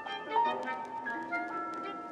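Algorithmic electronic music in the style of 1950s serial and avant-garde composition: sparse short tones scattered across high and low pitches, a few notes held steadily, and sharp clicks, the loudest cluster about half a second in.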